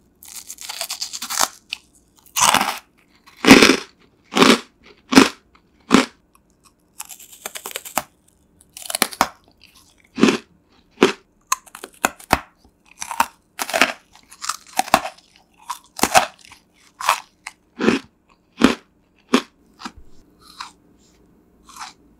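Close-miked crunching and chewing of freeze-dried candy: a long run of sharp, irregular crunches, about one or two a second, with short crackly crumbling between bites.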